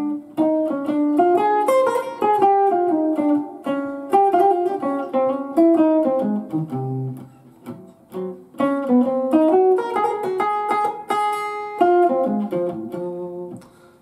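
Hollow-body archtop electric guitar playing a slow swing single-note solo line with triplet phrasing and a few two-note chords. The phrases break briefly about seven and eight seconds in, and the line dies away just before the end.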